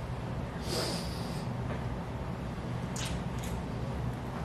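Soft breathing through the nose and faint lip sounds of a kiss in a quiet room, with a breathy hiss about a second in and two short ones near the end.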